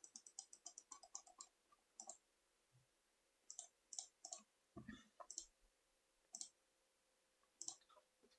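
Faint clicks of a computer mouse: a quick run of about a dozen in the first second and a half, then single clicks every second or so. One soft low thump comes about halfway through.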